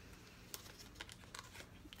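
Faint crinkling of a small cardboard product box being opened and handled, with a few light clicks and ticks scattered through it.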